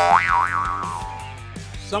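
Comedy sound effect: a sudden ringing tone that swoops up and down in pitch twice, then fades away over about a second and a half, over background music.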